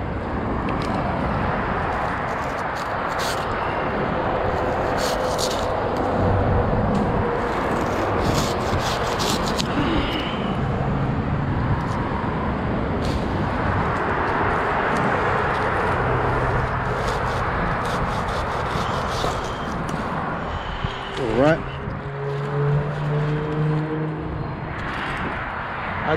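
Hand pruning saw cutting through date palm frond bases, under a steady rushing noise with scattered sharp clicks and snaps.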